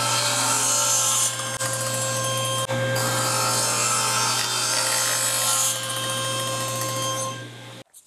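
Table saw running with its blade cutting a quarter-inch channel through a wooden block: a steady motor hum with a loud hiss of the cut that eases about a second in and swells again from about three seconds until shortly before the sound stops abruptly near the end.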